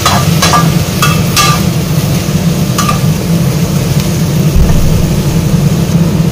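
Metal spatula scraping and knocking against an aluminium wok while stir-frying kailan, with five or so sharp clinks in the first three seconds, over a steady low rumble.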